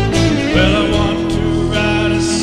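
Country-style guitar music: guitars playing an instrumental passage over a steady bass, with no lyrics sung.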